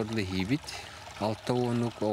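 A man's voice speaking in two short phrases.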